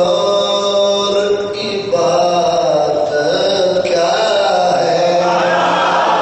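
A man's voice chanting a zakir's melodic recitation in long held notes: two sustained notes of about two seconds each, then a more moving phrase near the end.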